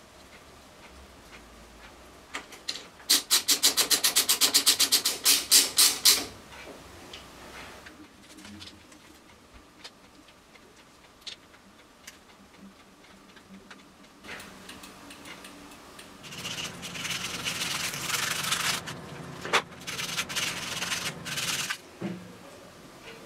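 Hand work on a motorcycle clutch lever and master cylinder at the handlebar: a quick, even run of sharp clicks lasting about three seconds, a quieter stretch, then several seconds of rough rubbing and scraping with a few clicks near the end.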